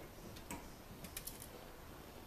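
A few light clicks as the air cleaner box lid is pressed down and its clips worked into place: one about half a second in, then a quick cluster of three or four. A couple of the clips are tough to close.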